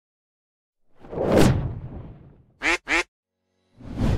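Sound-effect whoosh swelling and fading, followed by two short duck quacks in quick succession; another whoosh starts just before the end.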